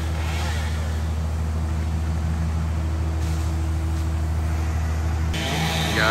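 Heavy engine of the tree crew's equipment running steadily at a constant speed, a low even hum. The sound changes abruptly near the end.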